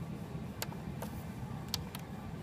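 A few short, sharp clicks of a finger pressing the buttons of a Denver Instrument MXX-5001 lab balance while trying to zero it, over a steady low hum.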